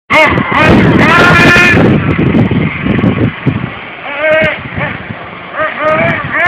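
Nitro RC buggy's small glow engine revving in short throttle bursts, its high pitch rising and falling with each blip, loudest in the first two seconds.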